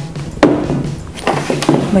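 A single sharp knock on the tabletop about half a second in, as a hand or tool comes down on the worktable.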